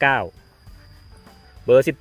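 A man speaking Thai at the start and again near the end. In the pause between, faint background music plays under a thin, steady high tone.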